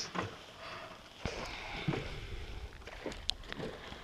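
Faint water lapping and small handling noises from a small boat being worked at the water's edge, with a few light knocks against the hull.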